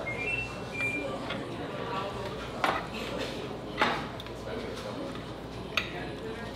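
Steak knives and forks cutting and scraping on metal platters, with three sharp clinks of cutlery against the plates, over a murmur of restaurant voices.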